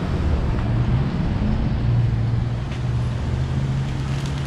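Street traffic: a motor vehicle's engine running close by, a steady low hum over road noise.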